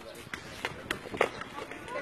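Footsteps and a ball being kicked on a concrete court: a string of sharp taps and scuffs about three a second, with voices in the background.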